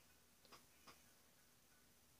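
Near silence: faint room tone with a low hum, broken by two faint clicks in quick succession about a second in.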